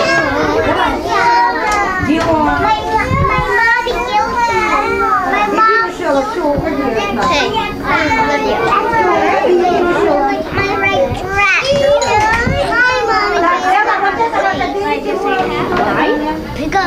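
A group of young children all talking and calling out at once, their voices overlapping into a continuous chatter.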